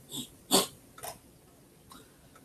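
A few short, breathy sounds from a man pausing between sentences, the loudest about half a second in.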